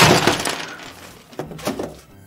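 Cardboard box and packaging rustling and crackling as it is pulled off a toy school bus. The noise is loudest at the start and fades over the first second, followed by a couple of short knocks as the toy is set down.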